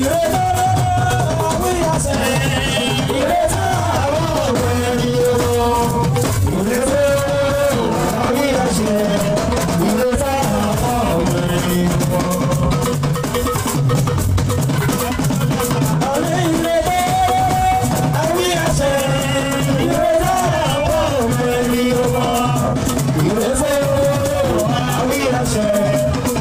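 Live fuji band music: hand drums and a rattle keep a steady groove under electric guitars and keyboard, with a lead singer's melodic line over the top.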